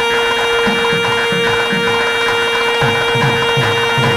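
Carnatic classical saxophone music in raga Dhenuka: a single long note held steady over regular low drum strokes.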